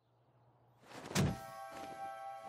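A single thump about a second in, followed by soft background music with held tones.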